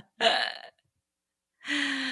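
A person's non-speech vocal sounds: a short breathy exhale after laughter, then about a second of silence, then a drawn-out voiced sound on one pitch, falling slightly near the end.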